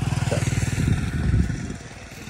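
A small engine running with an even, rapid beat, growing louder and then fading toward the end.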